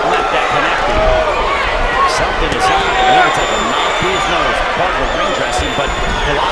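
Boxing arena crowd of many voices calling out, with dull thuds of gloved punches and footwork on the ring canvas at intervals.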